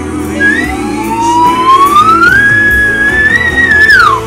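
Plastic slide whistle: a brief high note, then one long slow upward glide that levels off and holds, and drops sharply right at the end. Backing music plays underneath.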